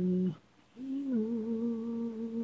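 A cappella singing voice holding a steady note that breaks off about a third of a second in. After a brief pause it sings a new, higher note that lifts slightly, dips and then holds.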